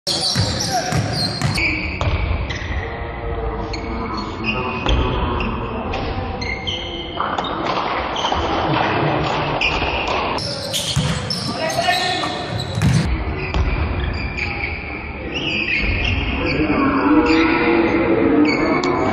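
Live basketball game on a hardwood gym floor: a ball bouncing and sneakers squeaking in short high chirps, with players' voices echoing in the hall.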